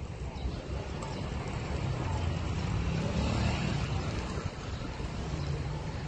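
A motor vehicle's engine running with a low rumble, swelling to its loudest about halfway through and then easing.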